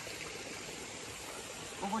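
Steady rush of running water.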